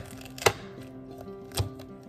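Kitchen knife cutting through pineapple and striking a glass cutting board: two sharp knocks about a second apart, over background music.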